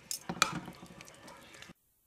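Two metal forks clicking and scraping against a slow cooker's crock while pulling apart cooked chicken breast in broth, with a couple of sharp clicks in the first half-second and then softer working sounds. The sound cuts off abruptly near the end.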